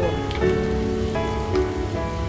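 Minced garlic sizzling steadily in melted butter and olive oil in an aluminium wok as it is stirred with a wooden spatula, with background music playing over it.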